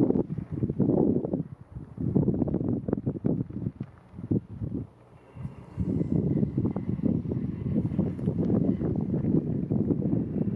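Wind buffeting the microphone in irregular gusts, a low rumbling noise that eases off briefly in the middle and then blows steadily.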